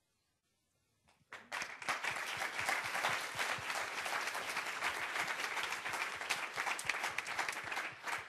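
Audience applauding, starting about a second in after a brief silence and holding steady.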